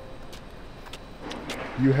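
Outdoor background noise: a steady low rumble with a few faint clicks, then a man's voice begins near the end.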